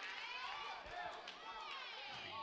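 Faint, distant voices of people in the congregation talking, well below the level of the preaching.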